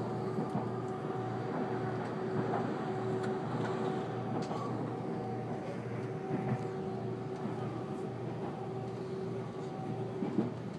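Inside the passenger cabin of a JR Central 373 series electric train running at speed: the steady rumble of wheels on rail, with a steady hum running through it and a few faint ticks.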